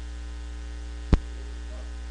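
Steady low electrical mains hum, with one sharp click about a second in.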